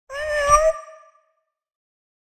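A single cat meow, rising slightly in pitch and lasting under a second.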